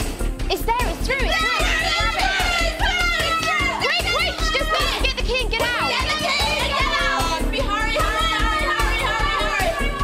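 Several people shouting and calling out excitedly over one another, over steady background music.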